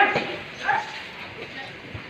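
Distant voices: a loud one just ending at the very start, then a short call less than a second in, over a low background.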